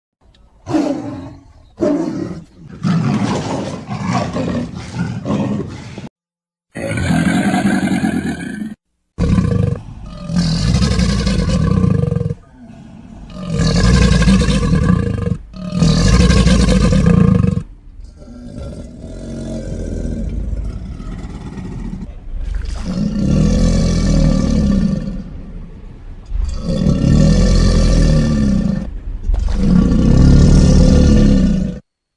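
Custom-made Tyrannosaurus rex sound effects: a series of about ten deep roars and growls, each one to four seconds long, cut apart by short silent gaps, with a quieter rumbling growl about halfway through.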